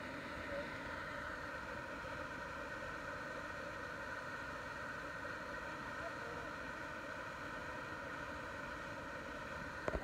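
Steady rushing of water in a boulder-strewn stream: an even, unbroken wash of noise.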